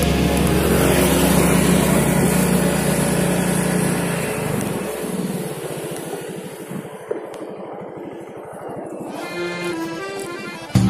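Guitar rock music fading out over the first half, giving way to a motorcycle engine running at low speed with a fast, even beat; a few notes of new music come in faintly near the end.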